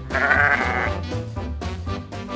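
A single sheep bleat, lasting just under a second, near the start over background swing music with brass.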